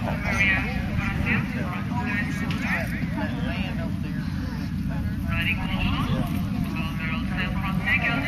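Indistinct talking of nearby people, too unclear to make out words, over a steady low rumble.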